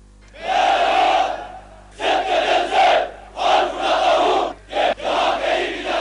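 A large body of troops shouting in unison, in short loud bursts about a second long, repeated roughly every second and a half.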